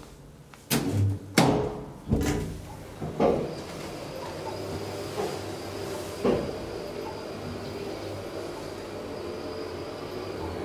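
KONE elevator starting off and travelling after the ground-floor button is pressed: a series of clunks and knocks in the first few seconds as the doors shut and the machinery engages, one more knock about six seconds in, then a steady low hum with a faint high whine as the car runs.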